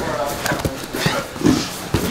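Irregular thuds and slaps of bodies, hands and feet on grappling mats during jiu-jitsu rolling, several within two seconds.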